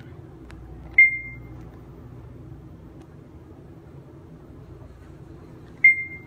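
Schindler 3300 traction elevator car's electronic chime dinging twice, about five seconds apart. Each ding is a single clear tone that fades within half a second, marking floors as the car travels up. Under the dings the car travels with a steady low hum.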